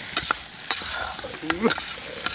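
Ingredients being stirred and mixed in a cooking pot, the utensil knocking against the pot a few times over a steady sizzling hiss. A short vocal sound comes near the end.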